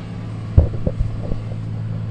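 Steady low drone of a car on the road, heard inside the cabin. Several dull thumps come from a handheld microphone being handled and passed between two people, the loudest about half a second in and the others up to just past a second.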